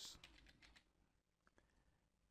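Faint keystrokes on a computer keyboard: a quick run of taps in the first second, then a couple more about one and a half seconds in.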